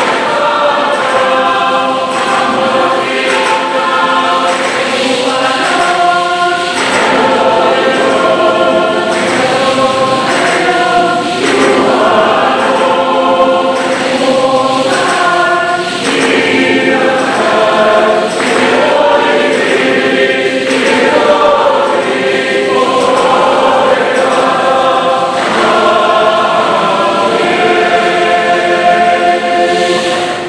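A church choir singing a hymn in harmony, its held notes changing every second or two.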